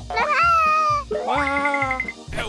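A cartoon character's wordless vocal sounds over background music: two drawn-out calls, the first about a second long and sliding slightly down in pitch, the second lower and steadier.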